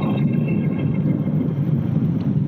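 A steady low drone from a horror film soundtrack, with faint high sustained tones above it in the first second.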